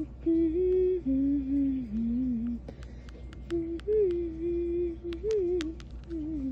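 A person humming a wordless tune in held, gliding notes with short pauses. A few light clicks come in the second half.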